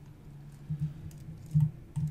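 A few keystrokes on a computer keyboard over a low steady hum. The loudest keystroke comes about a second and a half in.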